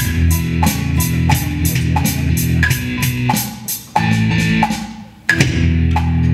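Electronic drum kit played in a steady rock beat, about three cymbal hits a second, along with a guitar-led backing track. The music drops out twice in the second half, breaks before the band comes back in.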